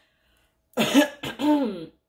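A woman clearing her throat: a short rasp followed by a voiced 'ahem', about a second long, starting a little under a second in.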